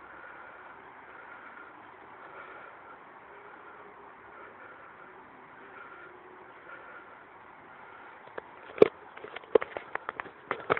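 Crossjet brush mower's engine running steadily at a fairly low level, with one loud sharp knock near the end followed by a few smaller clicks.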